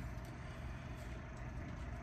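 A steady low background hum with no distinct events.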